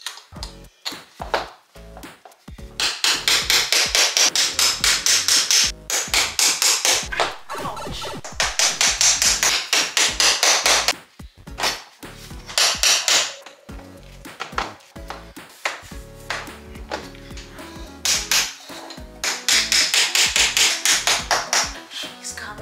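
A small hammer tapping together the parts of a flat-pack panel display shelf: fast runs of sharp taps, about five a second, in spells of a few seconds with pauses between. Background music plays underneath.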